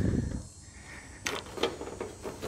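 Knipex Cobra water-pump pliers gripping and turning a rounded fender bolt: a few faint metallic clicks and scrapes in the second half.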